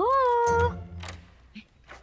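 A woman's high-pitched call of "yoo-hoo" through cupped hands, its last syllable rising and then held on one note before breaking off under a second in.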